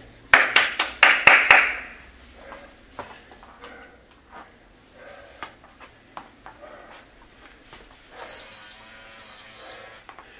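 Sneakered footsteps and taps on a hard floor as a man steps quickly forwards and backwards, starting with a loud flurry of sharp taps and a hiss about half a second in, then lighter steps. Near the end come two pairs of short, high electronic beeps.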